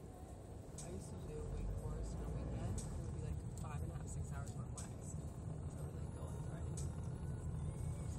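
Low, steady rumble of a car's engine and tyres heard from inside the cabin while driving, growing a little louder about a second in, with faint indistinct voices.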